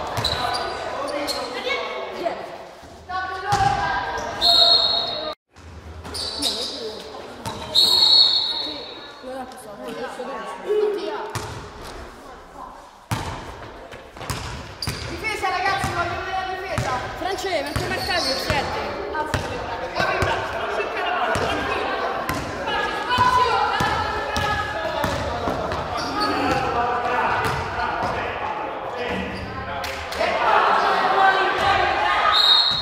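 A basketball bouncing on an indoor court during a game, among many voices, all echoing in a large gym. Two loud, high, short sounds stand out, about four and eight seconds in.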